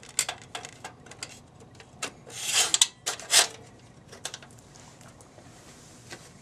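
Metal gel frame being handled and slid into the gel holder on the front of a PAR can: a run of small clicks and taps, a brief scraping slide about two and a half seconds in, and a sharp click just after.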